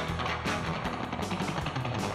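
Music with guitar and drums playing a steady beat.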